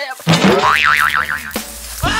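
Cartoon 'boing' spring sound effect: a springy tone that wobbles up and down in pitch about four times over roughly a second, over background music.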